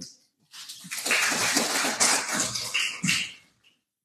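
Audience applauding. It starts about half a second in, builds within a second, and dies away shortly before the end.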